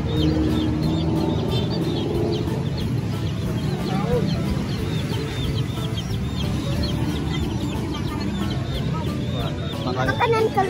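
Caged chickens clucking over a constant chorus of short, high peeping chirps, against a low background rumble.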